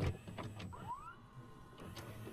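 A videocassette recorder's tape mechanism running: a click at the start, then a quiet motor whir with a couple of short rising chirps about a second in.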